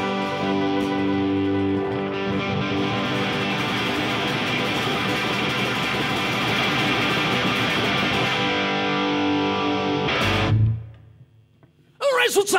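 Live folk-punk band playing an instrumental passage, led by strummed electric and acoustic guitars holding ringing chords. The song ends on a final hit about ten seconds in, and the sound then falls away to near quiet.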